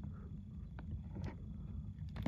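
Faint clicks and light knocks of a hard plastic trading-card holder being handled and moved, twice in the middle, over a steady low hum.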